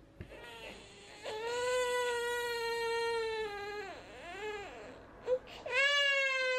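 Toddler crying: one long, steady wail held for about two and a half seconds, a short rise-and-fall cry, then another long cry starting near the end.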